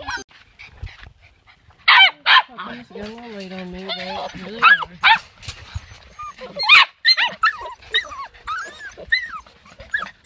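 A litter of Labrador puppies whining and yelping in short, high-pitched cries that rise and fall and overlap. There are a couple near two seconds in and a dense run of them from about seven seconds on.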